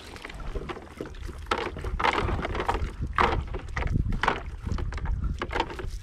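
Wet cast net being hauled up out of the water by hand, with water splashing and pouring off the mesh in several separate gushes. Wind rumbles on the microphone underneath.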